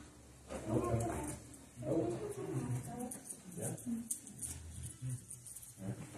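Quiet talking between people in a room, low in level and not clear enough to make out words.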